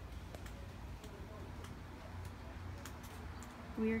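Footsteps on pavement, a few faint irregular ticks, over a low steady rumble of wind on the microphone; a voice starts speaking near the end.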